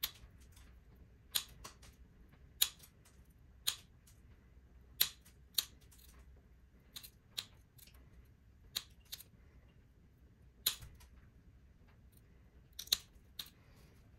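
Wheeled mosaic glass nippers nipping small corners off a piece of black stained glass, shaping it round. About a dozen sharp snaps, irregularly spaced, some a fraction of a second apart and others a couple of seconds apart.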